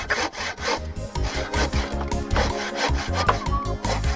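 Bow saw cutting through a wooden plank by hand, in quick repeated back-and-forth strokes. Background music comes in about a second in and plays under the sawing.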